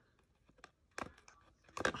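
A few faint clicks and light taps from craft materials being handled at the table, with one sharper click about a second in.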